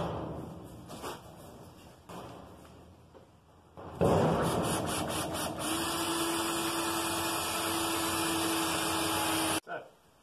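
Cordless drill boring a pilot hole through a steel sheet about 1.6 mm thick, into a steel upright behind it. It starts suddenly about four seconds in with a few rattling clicks as the bit bites, settles into a steady whine with a held tone, and cuts off abruptly just before the end. A few soft knocks come before it.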